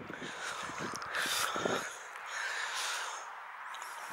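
A walker's breathing, two breaths about a second and a half apart, with faint footsteps on a grassy track.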